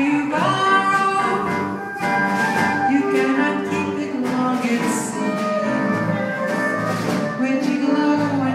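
Live band music recorded on a phone: held melody notes over a steady beat.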